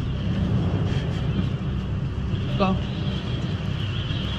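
Steady low rumble of a stopped car's engine running.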